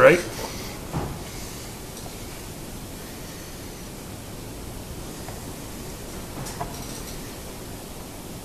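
Light handling of wooden jig parts on a table saw top: one short knock about a second in and a few faint clicks later, over a steady hiss.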